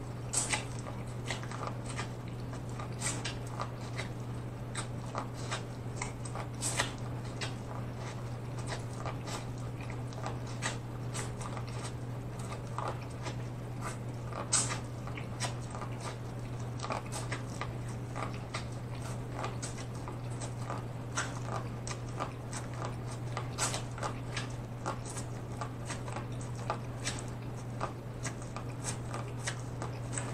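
Close-miked biting and chewing of sauce-soaked boiled corn on the cob, with many small sharp clicks and crunches as kernels are bitten off. A steady low hum runs underneath.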